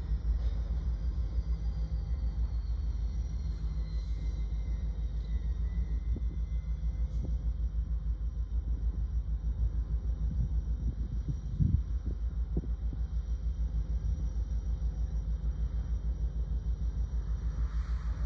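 Low, steady rumble of Norfolk Southern GP60 diesel locomotives (EMD 16-cylinder 710 engines) approaching at slow speed, with an even pulsing beat, and a short thump about two-thirds of the way through.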